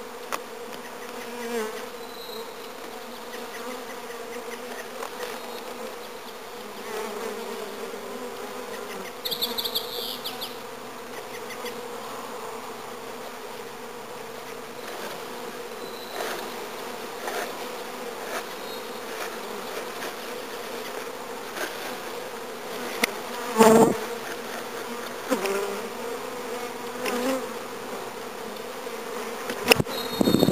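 Honeybees from a freshly installed package buzzing steadily in a dense swarm around an open hive, with a few knocks, the loudest about three-quarters of the way through.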